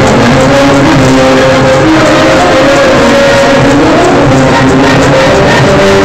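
Very loud dance music with a steady beat and a melody line moving over it, played for a hand-in-hand chain dance.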